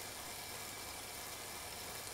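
Stationary bike trainer running steadily under pedaling: a faint, even hum with hiss.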